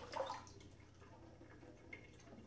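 Brief trickle of water into a glass as the flow from a water ionizer's spout stops, then faint dripping in a quiet room, with a small tick near the end.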